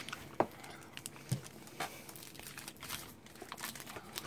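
A chocolate bar's wrapper, paper sleeve and foil, crinkling faintly as it is unwrapped, with a few scattered crackles.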